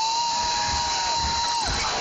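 Live hip-hop concert sound from within the crowd: a single high tone held steady for about a second and a half, then sliding down, over a hiss of crowd noise and a faint beat.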